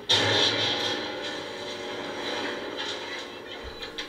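Piano crashing down in a TV drama scene: a sudden crash, then its jangled strings and wood ringing on and slowly dying away.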